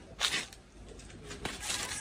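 Dry banana leaf sheath rustling and tearing briefly about a quarter second in, then a bird calling faintly in the background.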